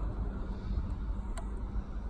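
Steady low background rumble with one light click about one and a half seconds in: a multimeter test probe tapping a fuse's test point during a voltage-drop check.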